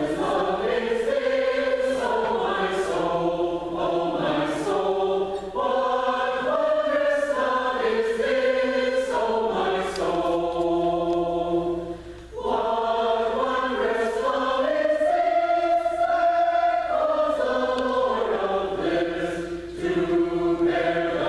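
Mixed choir of men's and women's voices singing a choral piece in sustained chords, with a short break between phrases about twelve seconds in.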